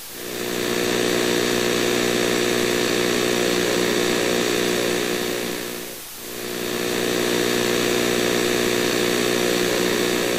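Loud, harsh electronic buzz mixed with static hiss, held steady; it fades briefly and swells back about six seconds in, as if looping.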